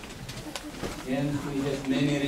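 A man's low voice, drawn out and wordless, starts about halfway through, after a couple of faint clicks.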